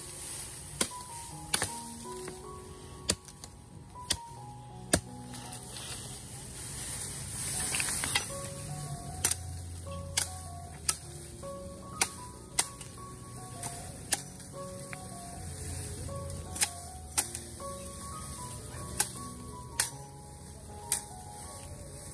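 Machete chopping into a green bamboo stalk: sharp knocks about once a second, at uneven intervals. Background music plays throughout.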